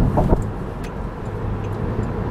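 Steady low road and tyre rumble of a car driving at highway speed, heard from inside the cabin, with a couple of short knocks in the first half-second.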